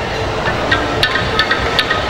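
The jukulele, the smallest and highest-pitched kolintang of the ensemble, its wooden bars struck with mallets in a quick string of bright notes starting about half a second in.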